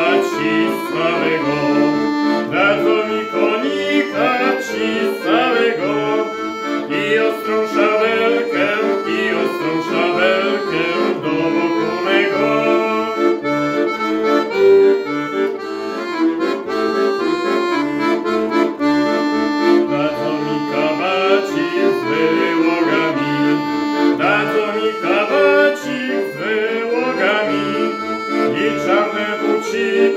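Weltmeister piano accordion playing a tune, a melody over a steady bass-note-and-chord accompaniment.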